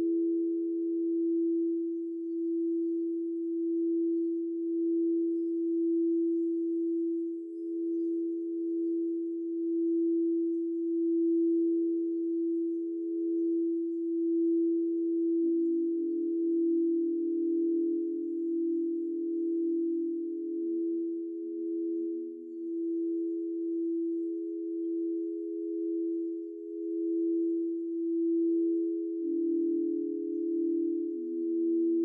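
Frosted quartz crystal singing bowls played by running mallets around their rims, sustaining steady pure tones that pulse slowly as they beat against each other. About halfway through a lower bowl tone joins, stepping lower a few seconds later, and another low tone enters near the end.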